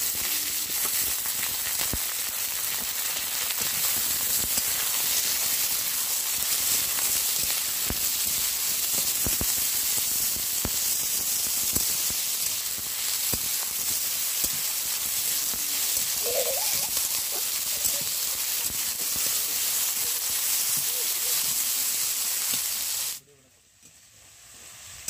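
Food frying in hot oil in an aluminium kadai: a steady sizzle with a few sharp clicks, cutting off abruptly near the end.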